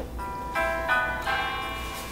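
Instrumental backing music between sung lines: a few steady held chords, with no voice.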